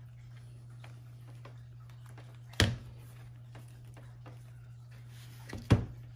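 A convertible laptop being handled and flipped from tablet to laptop mode on a wooden table: two sharp knocks about three seconds apart, the second the louder, with a few light ticks between them, over a steady low hum.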